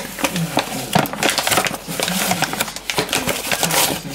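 A paper flour bag rustling and crinkling in quick irregular crackles as a hand works inside it, scooping out wholemeal flour.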